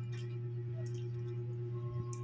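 A steady low electrical hum with a fainter steady higher tone above it, and a few faint soft clicks.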